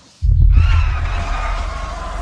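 A sudden deep boom about a quarter second in, carrying on as a sustained low rumble.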